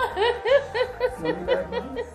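A woman laughing in a quick run of short pitched pulses, about four a second.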